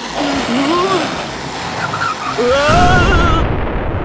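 Cartoon soundtrack: a character's wordless vocal cries, rising and falling in pitch, over snowstorm wind, with a race car's engine rumbling more loudly past the middle.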